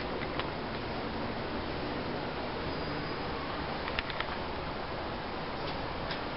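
Steady room noise inside a large shop, with a few light clicks about four seconds in.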